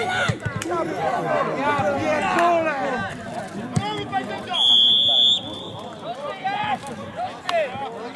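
Men shouting over one another around a football match, and a little past halfway one long blast of a referee's pea whistle, signalling a stoppage in play.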